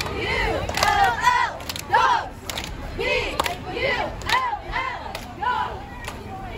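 A group of cheerleaders shouting a cheer together in rising-and-falling calls, with sharp hand claps between the calls.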